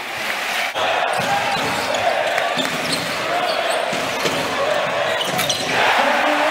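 A basketball dribbled on a hardwood court, its bounces thudding about once or twice a second, over steady arena crowd noise with voices.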